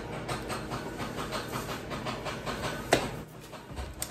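Pet hamster gnawing in the background: a fast run of small clicks, several a second, with one louder click about three seconds in.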